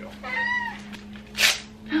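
A toddler's short, high-pitched squeal that rises and falls in pitch, followed about a second later by a brief crisp rustle, the loudest moment, as a paper gift is handled.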